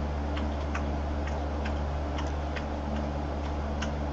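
Steady low room hum with light ticks, roughly two or three a second, at uneven spacing.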